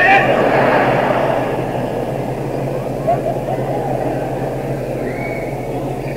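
A live audience's laughter and crowd noise on an old cassette recording. It swells suddenly at the start and tapers off over the next couple of seconds, with a steady low tape hum underneath.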